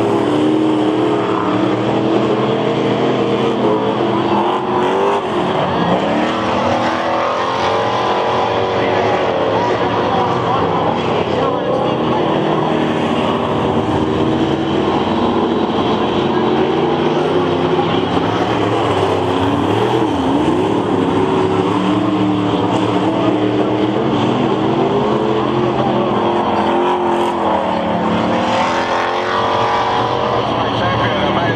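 V8 race car engines running as the cars lap the oval, their pitch rising and falling continuously as they go through the turns and straights.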